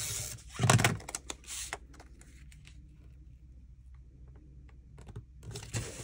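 Paper and cardstock being handled on a tabletop while a pattern-paper piece is put onto a pocket: a few quick rustles and taps, the loudest just under a second in. Then a quiet stretch with faint ticks, and more rustling near the end.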